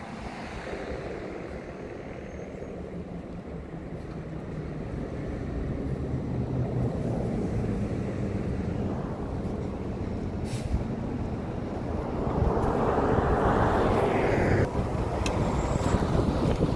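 Steady road and engine noise of a car driving in town traffic, slowly growing louder, with a louder rush of noise in the last few seconds that cuts off suddenly, and a couple of faint clicks.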